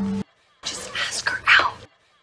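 Speech only: a short hushed, breathy line of dialogue, 'Just ask her out', after a brief silence.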